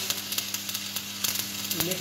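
Arc welding crackling and sizzling, with irregular sharp pops over a steady low hum.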